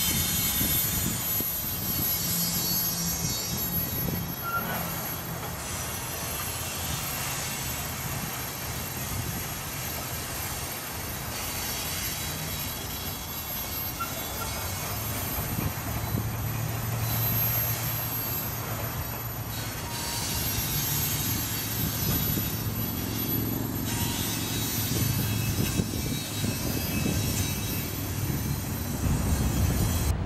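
Freight train of hopper cars rolling past: a steady rumble and clatter of steel wheels on the rails.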